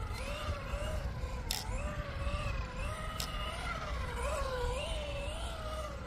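Whine of a Tamiya TT02 radio-controlled car's electric motor and gears, rising and falling in pitch as the throttle is worked on and off through figure-of-eight turns.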